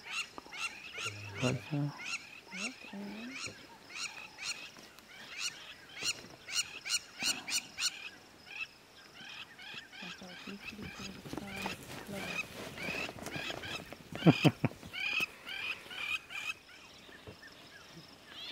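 Crowned lapwing calling over and over, a long run of short, high notes about two or three a second, thinning in the middle and picking up again later. A brief burst of human laughter is the loudest sound, about fourteen seconds in.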